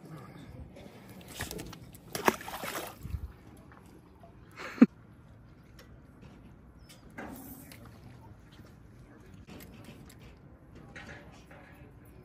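Scattered splashing and handling noises from a freshly caught trout being unhooked on a pier, with one short, sharp sound falling in pitch about five seconds in, the loudest thing heard.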